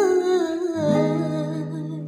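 Music: acoustic guitar notes ringing and dying away under a held, wordless vocal note that wavers and slides down in pitch, the whole fading toward the end.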